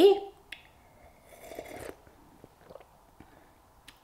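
Soft mouth sounds of someone sipping cold-brewed tea from a glass and tasting it: a brief sip about a second in, then small lip and tongue clicks.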